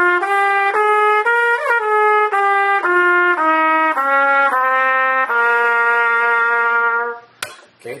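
Trumpet playing the C Dorian mode (trumpet's written pitch, two flats) in separate notes, about two a second. It reaches the top C with a small bend about a second and a half in, then steps back down the scale and holds the low C for nearly two seconds before stopping near the end.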